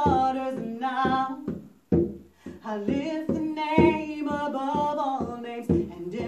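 A woman singing a slow worship melody over a steady hand-drum beat on conga drums. The singing briefly breaks off a little before two seconds in and then resumes over the beat.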